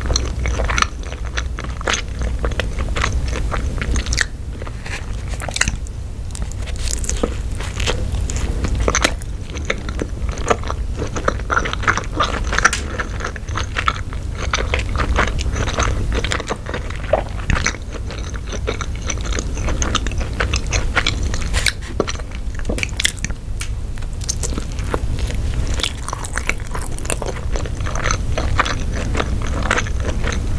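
A person chewing a mouthful of hot dog topped with mac and cheese, close to the microphone, with a steady run of small mouth clicks, and a further bite taken in the second half.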